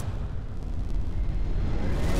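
Intro sound-design effect under an animated logo: a loud, low, noisy rumble like a long boom that holds steady without melody.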